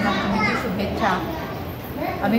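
Children's voices chattering and calling out in a room.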